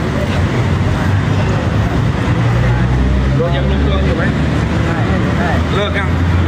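City street traffic rumble picked up on a phone, with a heavy low drone that swells in the middle, under scattered voices.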